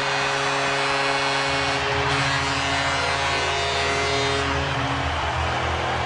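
Arena goal horn sounding one long, steady blast over a cheering crowd, the signal of a home-team goal; a deeper tone joins about a second and a half in.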